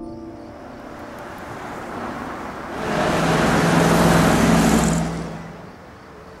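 A motor vehicle passing close by: road and engine noise swells from about two seconds in, stays loud for about two seconds with a steady low engine hum, then fades away.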